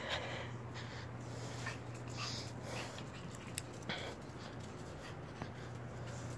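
Pug puppy sniffing and breathing faintly, in short snuffling bursts, over a steady low hum, with a single small click a little past halfway.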